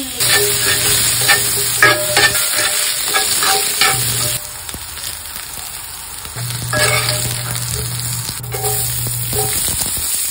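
Potato chunks and carrot slices sizzling in hot oil in a pan, with sharp clicks and scrapes of a metal utensil turning them every second or so.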